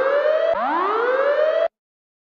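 Siren-like synthesizer sweeps in the electronic dance music track, each a fast rising whine that levels off. A new sweep starts about half a second in, and all sound cuts off abruptly to silence near the end.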